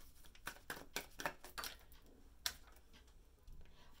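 Tarot cards being handled: a string of light clicks and snaps as cards are drawn from the deck, the sharpest about two and a half seconds in.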